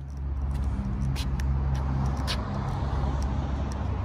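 A motor vehicle's engine running close by: a steady low rumble that eases a little near the end, with a few light clicks over it.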